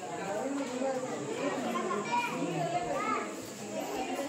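Background chatter of several adults and children talking over one another in a large, roofed hall, with no single voice standing out.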